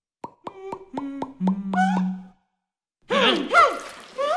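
Cartoon sound effect: a quick run of six or seven plops stepping down in pitch, ending on a longer low note, as the wolf turns green with paint. About three seconds in, a cartoon character's voice follows with wavering, gliding sounds.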